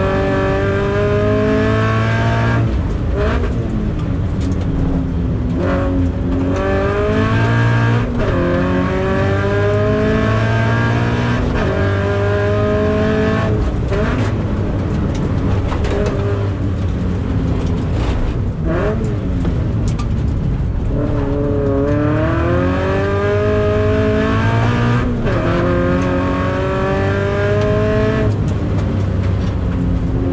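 Toyota 86 (ZN6) FA20 flat-four engine heard from inside the cabin while lapping a circuit, its pitch climbing under full-throttle acceleration again and again and dropping back between pulls on gear changes and lifts for corners.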